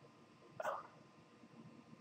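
One short vocal sound from a man, like a hiccup, about half a second in. It lasts about a quarter of a second against near silence.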